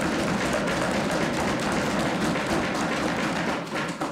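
Members of the legislature applauding: a dense, steady patter of clapping and desk-thumping that eases slightly near the end.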